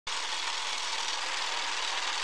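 Film projector sound effect: a steady, hissing mechanical whirr that starts at once.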